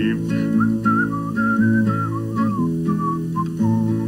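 A man whistling a wandering tune over his own strummed and plucked acoustic guitar; the whistled melody starts about half a second in and stops just before the end.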